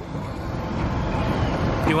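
Wind buffeting the camera microphone: a low, noisy rumble that grows louder toward the end, where a man starts to speak.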